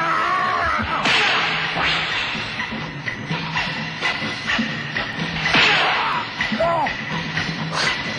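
Background music with added punch sound effects for a staged fight: a sharp swish-and-hit about a second in and another at about five and a half seconds, with lighter hits between.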